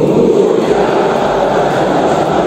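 A large group of men reciting an oath together in unison, their many voices blending into one dense mass of sound with no single voice standing out.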